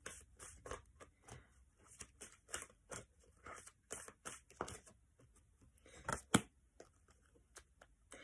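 Faint rustling and light irregular clicks of oracle cards being handled and sorted by hand, with a sharper tap about six seconds in.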